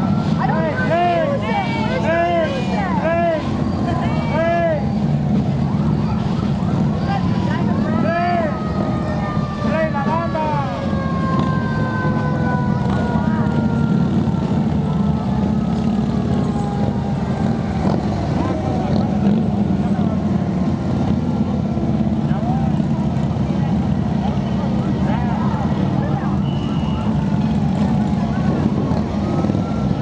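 Police motorcycles riding slowly past with a steady low engine rumble. Short, repeated siren whoops sound in the first few seconds and again around eight seconds in, followed by long, slowly falling siren tones over about ten seconds.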